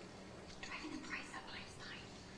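Faint whispered speech from the soundtrack of a television drama clip being played back.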